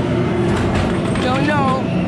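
A loud, steady low rumble of haunted-attraction sound effects. About a second and a half in, a voice gives a wavering cry that rises and then falls.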